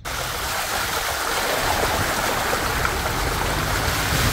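Car tyre driving through floodwater on a road, giving a steady rushing splash of sprayed water.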